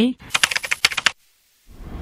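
A quick run of about ten sharp clicks lasting under a second, then a short silence and a hiss of noise that starts near the end.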